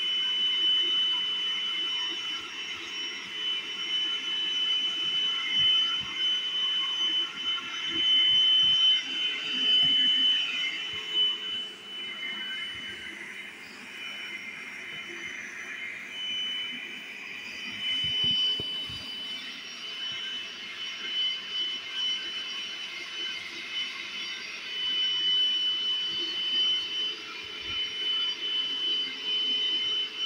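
Bissell SpotClean portable carpet cleaner running, its suction motor giving a loud, steady high-pitched whine while the hand tool is worked over carpet, with a few soft knocks of the tool.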